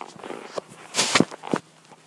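Handling noise from a handheld camera being moved about: rustling and a few knocks, loudest in a burst about a second in, followed by two sharper knocks.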